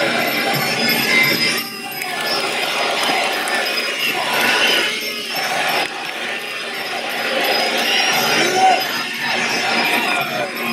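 Traditional Muay Thai fight music (sarama) playing continuously. Small ching cymbals jingle above a wavering, gliding reed melody.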